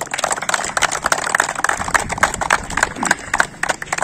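A group of people applauding by hand: a quick, irregular patter of many claps that thins out near the end.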